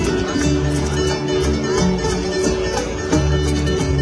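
Live traditional string-band music, amplified through large outdoor PA speakers: plucked strings over a steady, sustained bass line.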